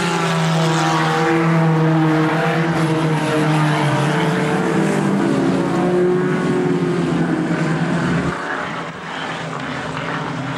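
Several speedway race cars' engines running hard on a dirt oval, their pitches overlapping and rising and falling as the drivers work the throttle. They drop a little in loudness after about eight seconds.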